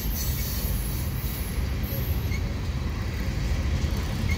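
Cars of a mixed freight train rolling past: a steady low rumble of steel wheels on the rails. For the first two seconds a high hiss rides over it.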